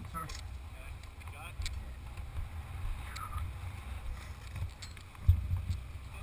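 Wind buffeting a helmet-mounted camera microphone as a low, uneven rumble, with faint voices and a sudden thump a little past five seconds in. The drag bike's engine is not running.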